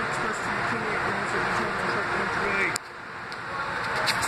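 Background chatter of people's voices over a steady station hum. About three-quarters of the way in, the sound drops off suddenly and then builds back up.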